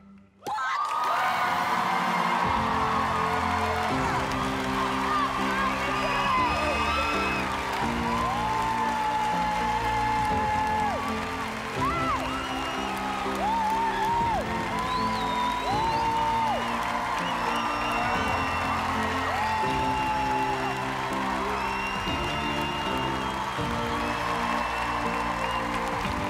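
Studio audience applauding, cheering and whooping, starting about half a second in, over background music with sustained chords.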